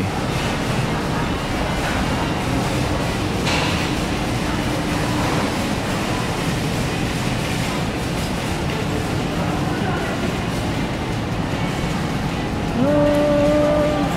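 Steady, even noise of a Pride ZT10 mobility scooter driving through a supermarket, mixed with the store's background hum. Near the end a steady pitched tone sounds for about a second.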